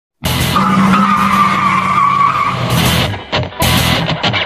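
Intro sound effect of a racing car and screeching tyres, mixed with music. It starts abruptly, with a steady squealing tone through the first half and choppier bursts near the end.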